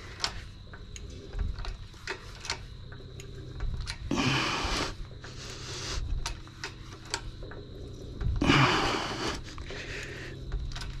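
Hand-pumped hydraulic bottle jack in a scrap-metal press being worked with a long handle bar, compressing aluminium. Scattered clicks and knocks come from the pump strokes, with two longer bursts of noise about four and eight and a half seconds in.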